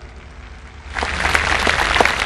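Audience applause breaking out about a second in, after a brief near-quiet pause.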